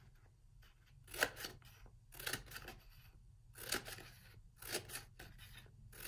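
Scissors snipping through paper, a series of short separate cuts about a second apart, cutting fringe strips along dotted lines.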